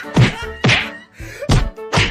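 Punches landing in a fist fight: a run of heavy whacks about half a second apart, over background music.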